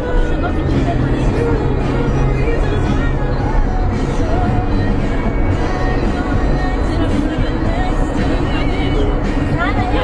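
Music with singing, playing at a steady level throughout.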